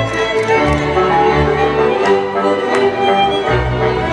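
A Slovácko cimbalom band playing verbuňk dance music, with fiddles carrying the melody over a bowed bass line. Two sharp knocks cut through the music, about two seconds in and again near three seconds.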